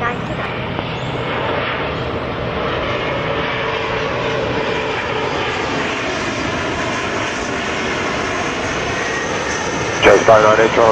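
Twin rear-mounted turbofan engines of a Bombardier CRJ900 airliner on short final, gear down, giving a steady, even jet noise with a faint hum in it.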